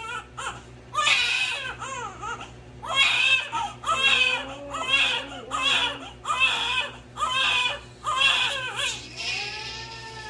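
Newborn baby crying in a run of short, loud wails, roughly one a second, while its heel is squeezed for a blood-spot screening sample; the crying eases to a softer, smoother whine near the end.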